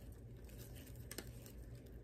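Faint rustling of paper and a card being handled, with one light click a little after a second in.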